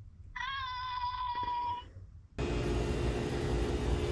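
A single high, held tone lasting about a second and a half, then, after an abrupt cut, the steady rush and low hum of commercial kitchen machinery in a dish room.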